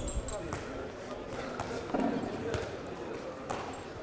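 Handballs bouncing on a sports hall floor: several irregular thuds, under the chatter of players' voices.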